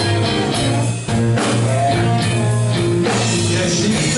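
Live rock band playing: electric guitars over a drum kit, with a brief drop in the music about a second in.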